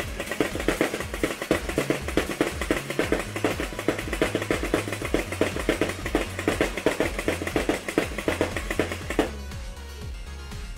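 Hopper-fed Nerf Rival blaster firing foam balls on full auto: a rapid, even stream of shots, about seven a second, that stops about nine seconds in. Background music plays underneath.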